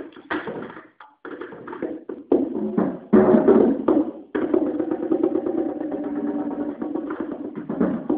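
Solo drum kit played with sticks: separate strokes on the drums with a short break about a second in, then from about halfway a fast, unbroken roll on the drums.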